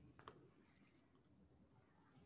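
Near silence, with a few faint short clicks in the first second from a handheld eraser being set to and worked over a whiteboard.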